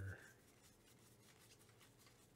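Faint rustle of cardboard baseball trading cards being thumbed one at a time off a stack, card sliding against card.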